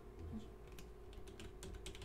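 Typing on a computer keyboard: a quick, uneven run of faint keystrokes.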